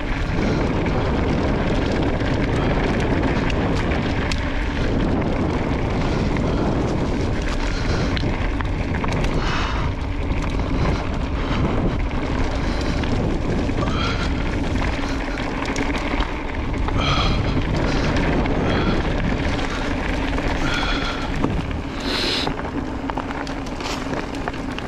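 Wind rushing over an action camera's microphone together with knobby mountain-bike tyres rolling over a dirt singletrack, a steady rough noise as the e-bike runs along the trail. Brief high-pitched sounds cut through a few times, around the middle and toward the end.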